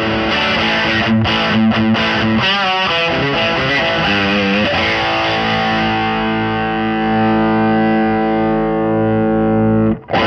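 Telecaster electric guitar played through a Marshall overdrive pedal into a Dr Z MAZ 210 tube amp. Distorted chords, then notes with a wavering pitch, then a chord left ringing for the last few seconds that cuts off suddenly at the end.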